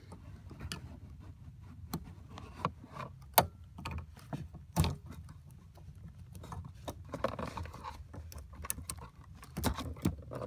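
Scattered plastic clicks and small knocks as a screwdriver pries a yellow seat-airbag connector off its bracket under a car seat. The two loudest clicks come about three and a half and five seconds in.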